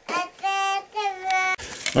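A small child's voice singing two high, held notes in a row.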